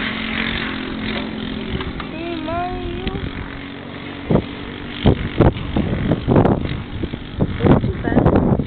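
Distant go-kart with a clone engine, a small single-cylinder four-stroke, running steadily on track, its pitch dipping and rising about two to three seconds in. In the second half, irregular wind gusts buffet the microphone.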